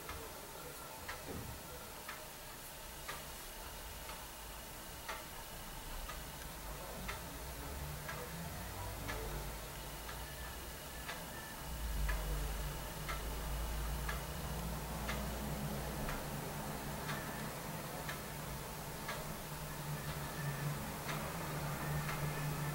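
Faint steady ticking, about one tick a second, with a low hum that grows louder about twelve seconds in.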